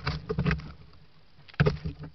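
A deer stag's muzzle right at the trail camera: two short bursts of close sniffing and rubbing noise on the microphone, one at the start and one about a second and a half in.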